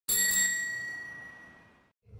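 A single bell ding, struck once at the start and ringing out as it fades away over nearly two seconds.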